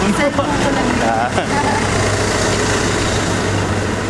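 Vehicle engine idling steadily, a constant low hum, with a few brief voices about a second in.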